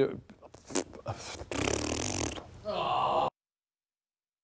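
A man's breathy vocal sounds: a long breath or sigh and a short mumble. The sound then cuts off suddenly into dead silence about three seconds in.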